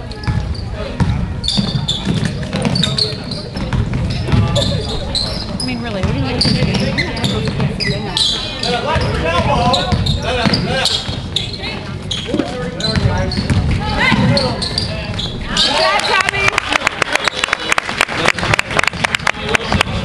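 Basketball game sounds on a hardwood court: spectators talking over a basketball bouncing. In the last few seconds comes a fast run of sharp clicks.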